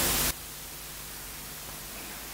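Steady faint hiss of microphone and recording noise in a pause in the talk, after a voice trails off about a third of a second in.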